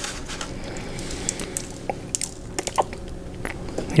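Close-up chewing of a mouthful of Chicago-style hot dog: soft, wet chewing with scattered small crunches from the toppings.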